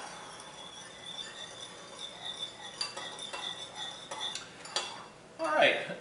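A spoon stirring a thick sauce in a small ceramic bowl, with a few light clinks of the spoon against the bowl.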